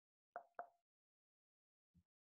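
Two faint, quick clicks about a quarter second apart, over near silence.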